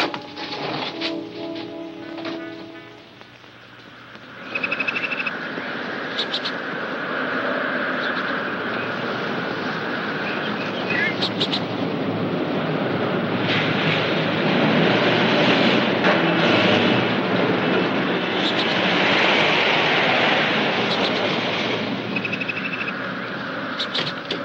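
Film score music ends about four seconds in. Then a car's engine runs and its tyres rush on a dirt road, growing louder as the car approaches and pulls up.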